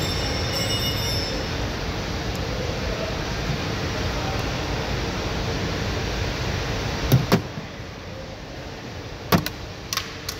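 Steady background noise, then two sharp plastic clicks about two seconds apart near the end, as the clipped-in access cover in the hatch's inner trim panel is pried off.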